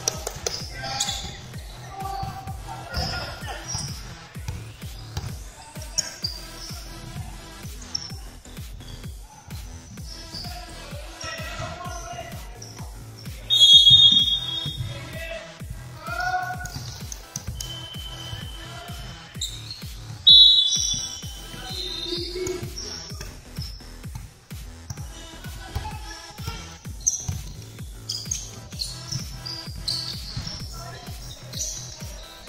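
Basketball game in a large echoing gym: the ball thuds on the wooden court amid players' shouts. Two loud, shrill referee whistle blasts come about a third and two-thirds of the way through.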